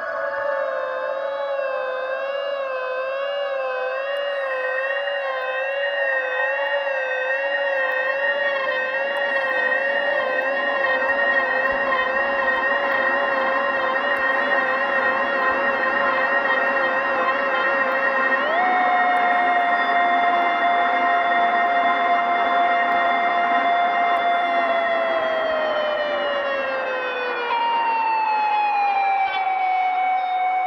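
Long held notes from violin, soprano saxophone and EBow guitar, one wavering with slow vibrato. About two-thirds of the way through the main note steps up and holds, then slides slowly down, and near the end a higher note slides down to meet it.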